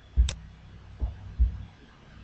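Computer mouse clicks with dull thumps through the desk: three low knocks, the first with a sharp click on top.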